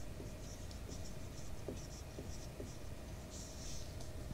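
Pen writing on paper: a run of faint, short scratching strokes as a word is written out.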